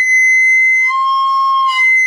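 Boxwood soprano recorder sounding a loud, shrill high B held as one long note. About a second in it drops an octave and holds the lower note until near the end, then jumps back up: the note shifting as the thumb hole is opened and closed, showing how the size of the thumb-hole opening decides whether the high note speaks.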